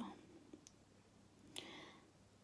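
Near silence as a whisper trails off, with one faint click about a third of the way in and a soft breath near the end.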